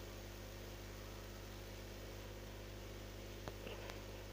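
Quiet background: a steady low electrical hum with faint hiss, and a faint click about three and a half seconds in.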